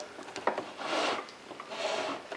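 Epson Stylus S22 print carriage pushed by hand along its rail with the CISS ink tubes dragging along, a check that the tubes leave the carriage its full travel. Two soft sliding sounds, a longer one from about half a second in and a shorter one near the end.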